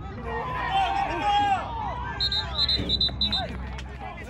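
Sideline spectators shouting and calling out during a youth football play, with raised, drawn-out voices. Just past the middle, a quick run of about six short, high-pitched beeps sounds over the voices.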